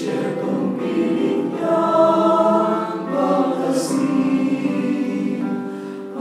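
Small mixed choir of women and men singing a Tagalog Christmas song in rehearsal, several voices together on sustained, changing notes.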